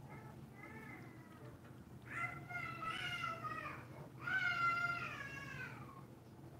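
A cat meowing: a faint call early on, then two long, loud drawn-out meows, each rising and then falling in pitch.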